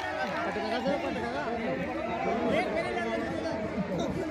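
Several men talking over one another, with crowd chatter in the background.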